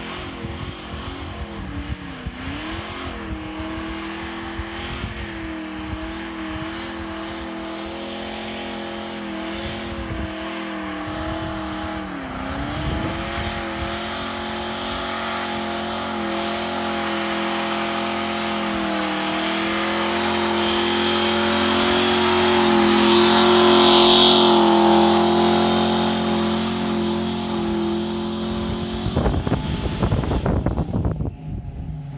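Ford Ranger pickup doing a burnout: the engine is held at high revs while the rear tyres spin and squeal on the pavement. The revs dip briefly twice, and the sound grows louder as the truck creeps closer. Near the end the steady note breaks off into uneven revving.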